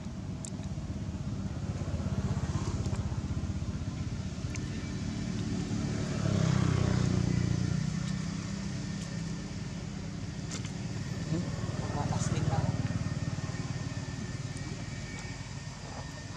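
Low engine rumble of passing motor vehicles, swelling to a peak about six to eight seconds in, easing, then rising again around twelve seconds before fading.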